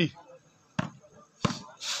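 Volleyball struck by players' hands during a rally: two sharp smacks about two-thirds of a second apart.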